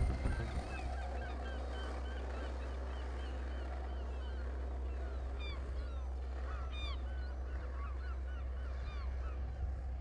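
Outdoor ambience of many birds calling in short, repeated chirps over a steady low rumble, after the music stops right at the start.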